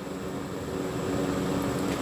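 Steady background hum and hiss with no distinct events: room noise between spoken lines.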